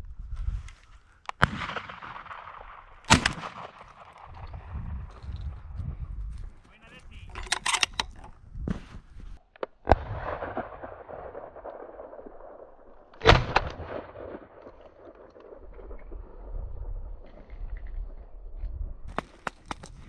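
Shotgun shots aimed at thrushes in flight: several sharp reports, the loudest about 3, 10 and 13 seconds in, each trailed by a rolling echo, with fainter shots between.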